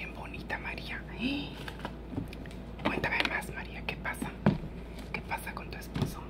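A woman whispering under her breath, with a few light clicks and taps.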